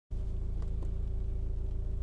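A BMW's engine idling steadily, heard from inside the car's cabin as a low, even rumble.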